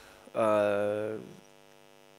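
A person's drawn-out hesitation sound, a wordless vocal filler held at one steady pitch for about a second, then fading out. A faint steady electrical hum continues underneath.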